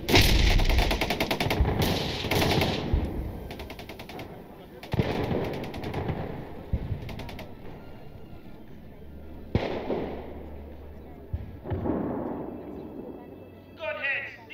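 Rapid bursts of automatic cannon fire from attacking aircraft strafing a ground target. A long burst fills the first three seconds, a second burst comes about five to seven seconds in, and a single sharp bang follows near ten seconds.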